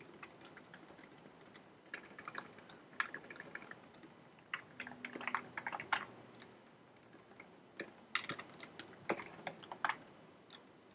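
Computer keyboard typing: bursts of fast keystrokes with pauses between them.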